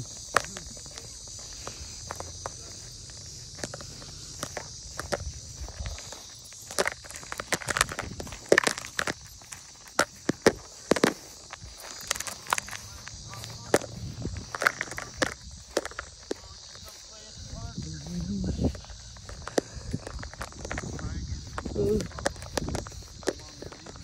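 Footsteps on grass, a run of irregular soft knocks, from someone walking while filming, with brief voices in the middle and near the end over a steady high-pitched hiss.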